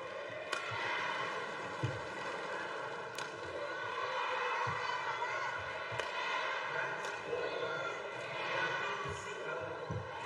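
Badminton rally: sharp cracks of the shuttlecock struck by rackets every few seconds, with short low thuds of players' footwork on the court, over a steady arena crowd murmur.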